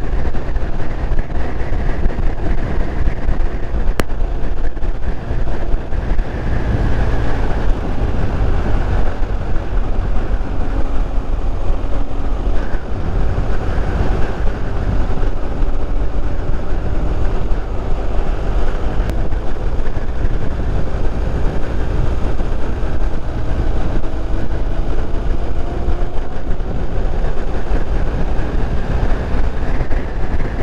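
BMW motorcycle riding at speed, its engine note rising and falling gently, under a steady low rumble of wind on the microphone.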